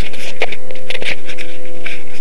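Scale MD 369 RC helicopter's motor running with a steady whine, under rubbing and clicking from the camera being handled.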